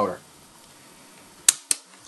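Two sharp mechanical clicks, about a fifth of a second apart, about one and a half seconds in: the piano-key controls of a late-1960s Sharp RD-426U cassette recorder being pressed, switching the tape mechanism out of rewind and into play.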